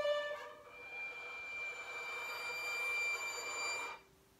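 Solo violin: a held note ends shortly after the start, then a long high note is bowed, swelling in loudness before stopping abruptly near the end.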